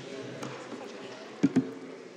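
Two quick dull knocks a fraction of a second apart, about a second and a half in, close to a desk microphone, over faint murmuring voices in the room.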